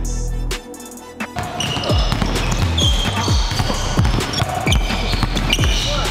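Music ends about half a second in. From about a second and a half in, a basketball is dribbled rapidly and irregularly on a hardwood gym floor, with short high squeaks from sneakers.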